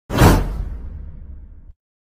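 Whoosh sound effect with a deep boom under it. It hits suddenly at the start, fades over about a second and a half, and cuts off just before the end.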